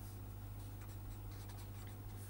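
Felt-tip marker writing on paper: faint, quick scratching strokes of handwriting, over a steady low hum.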